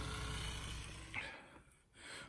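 Low, steady background rumble and hiss that fades out about a second in, followed by a brief faint rustle and then near silence.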